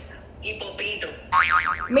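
A short warbling sound whose pitch swings quickly up and down several times for about half a second, loud, about a second and a half in.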